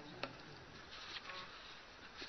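Faint background noise during a pause in speech, with one short click shortly after the start.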